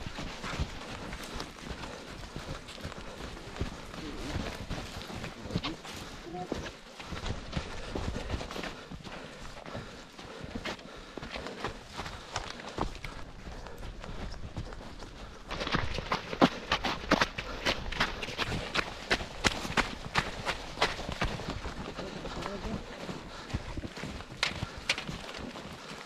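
Running shoes crunching through snow in a steady rhythm of footfalls, growing louder and sharper about fifteen seconds in.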